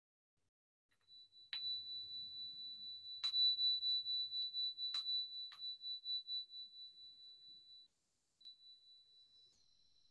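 A small meditation bell struck four times, ringing on one high note that carries on between strikes and fades out. A fainter ring follows near the end. It marks the close of a silent sitting.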